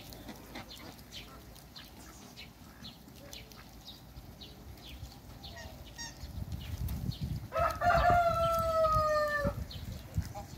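A rooster crows once near the end, one long call of about two seconds that sinks slightly in pitch, over a low rumble and faint short ticks.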